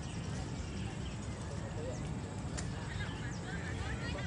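Wind buffeting the microphone: a steady, fluttering low rumble, with faint distant voices under it.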